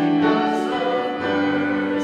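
A church choir singing a slow sacred piece in sustained, held chords.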